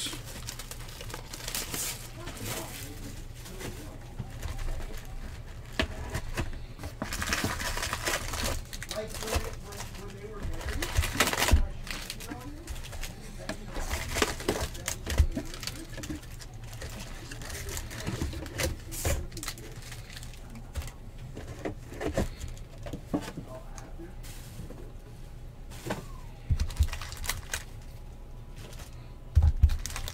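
Foil-wrapped Bowman trading card packs crinkling and rustling as they are handled and lifted out of a cardboard box, with irregular crackles and soft knocks, over a low steady hum.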